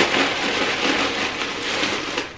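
Plastic packaging crinkling and rustling steadily as it is handled and a bag strap is pulled out of it.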